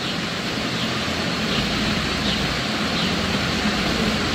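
Steady, even hiss of background room noise, with no distinct events.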